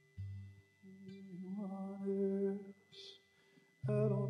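Slow worship singing: a voice holds long, drawn-out notes with a soft instrumental backing, breaks off a little under three seconds in, and starts a new phrase just before the end.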